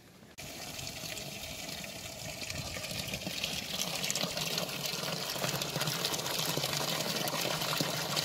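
Village fountain: a stream of water pouring from a brass spout into a full trough, splashing steadily. It starts abruptly about half a second in and grows slowly louder toward the end.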